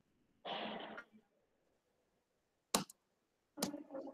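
Small noises picked up by a participant's microphone on a video call: a short breathy or coughing burst, then dead silence, then two sharp clicks with some handling noise after the second.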